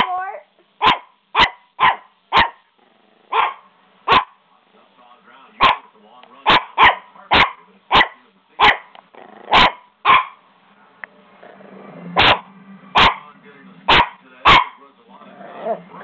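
Small puppy barking repeatedly: a long run of short, sharp barks about half a second to a second apart, with a brief pause about two-thirds of the way through.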